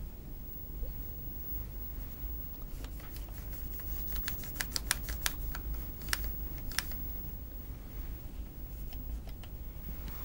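Quick run of small clicks and taps from a film projector's gate being handled and wiped with a cloth, bunched in the middle few seconds, over a low steady hum.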